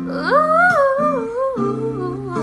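Female voice singing a wordless run that rises and then steps back down, over ringing acoustic guitar chords.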